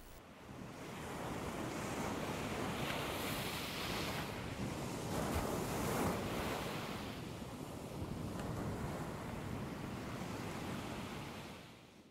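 Ocean surf washing in, a steady rush that swells and eases as waves break. It fades in at the start and fades out near the end.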